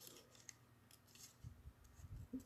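Small scissors cutting a scrap of white paper: a few faint snips spread across the moment.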